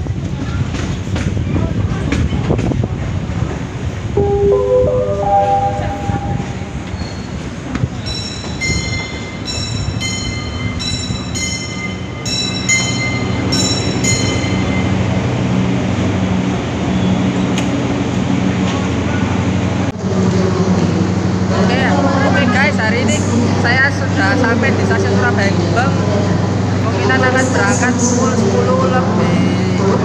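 A train running into a station, followed by a rising chime and a short repeating melody from the station's loudspeakers. In the last third there is a steady low hum from a standing train, with voices over it.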